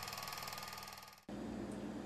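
Faint steady whir fading away, cut off about a second in, then a low steady hum of room tone.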